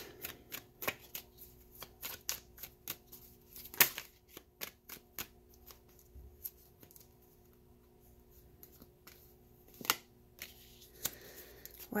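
A tarot deck being shuffled by hand: quick runs of soft card clicks and slaps, thick for the first few seconds, then thinning out, with a sharper snap about four seconds in and another near ten seconds.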